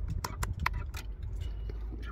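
Rotary selector knob on a TIS EV test adaptor being turned, a few quick clicks in the first second as it steps into state C (vehicle charging), over a steady low rumble.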